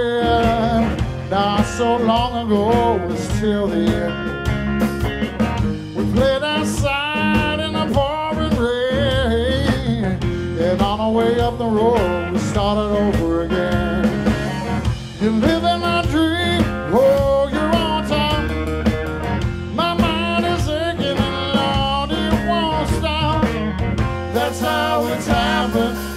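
Live blues trio playing: a Stratocaster-style electric guitar carries the melody with bent, wavering notes over bass guitar and drums.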